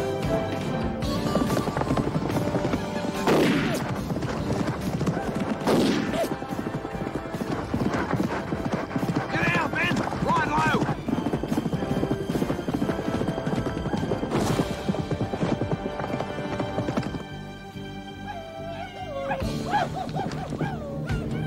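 Horses galloping hard, a fast continuous drumming of hooves on dry ground, with a horse neighing and a shouted call about ten seconds in, over a film score.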